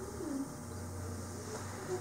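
A child's soft, wordless voice, with a falling glide near the start and short low sounds later, over a steady low hum.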